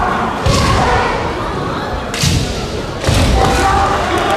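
Kendo arena sounds: three sharp thuds, about half a second in, a little after two seconds and at about three seconds, from stamping footwork and bamboo shinai strikes on a wooden floor, with shouted kiai in the background.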